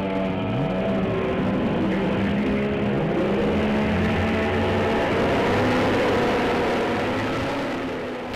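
The twin outboard engines of an Atlantic 21 rigid inflatable lifeboat running under way at speed, their pitch climbing slightly near the start and again about three seconds in, over a steady hiss of water and spray.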